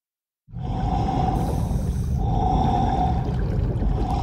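Underwater ambience in film sound design: a deep steady rumble that starts suddenly about half a second in, with a mid-pitched moaning tone that swells and fades roughly every one and a half seconds.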